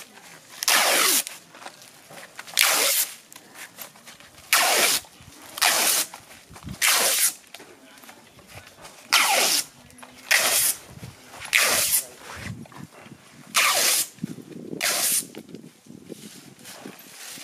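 Adhesive tape pulled off a roll in short strips, about eleven pulls roughly a second apart, each dropping in pitch as it goes.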